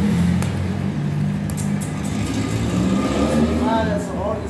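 A low, steady motor hum, with people's voices in the background near the end.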